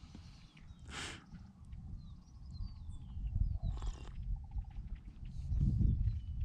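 Two short breathy sips of hot coffee from an enamel camp mug, about a second in and about four seconds in, over a steady low wind rumble on the microphone that grows toward the end. Faint marsh bird chirps and a brief pulsed call sound in between.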